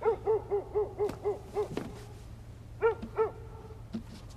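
A rapid series of short owl-like hooting calls, each rising and falling in pitch: about eight in under two seconds, then a pause and two more near the end.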